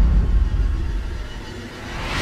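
Deep, heavy rumble with a hiss above it, slowly fading, then a rising noisy swell near the end: cinematic trailer sound design.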